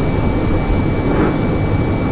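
Steady low rumble inside a coach's passenger cabin, the engine and road noise of the bus, with a faint steady high-pitched whine.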